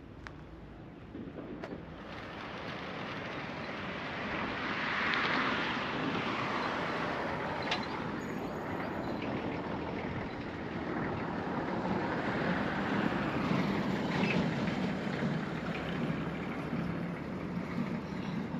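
Road traffic passing: tyre and engine noise that swells about five seconds in and again around twelve to fourteen seconds, with a few faint clicks in the first two seconds.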